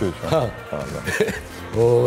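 Speech: short spoken phrases near the start and again near the end, with quieter talk between.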